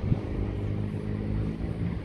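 Wind rumbling on the phone's microphone, with a steady engine hum from a passing motor vehicle for most of the two seconds.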